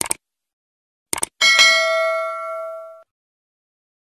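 Subscribe-button sound effect: a short mouse click at the start, a quick double click about a second in, then a bright bell ding that rings out for about a second and a half.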